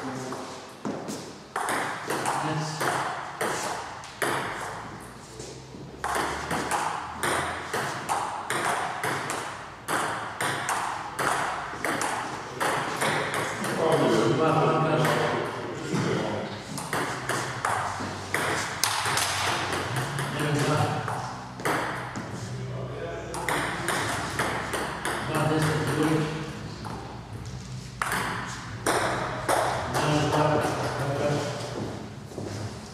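Table tennis rallies: a celluloid ball being struck back and forth, a rapid run of sharp clicks from ball on bat and ball bouncing on the table, with short pauses between points.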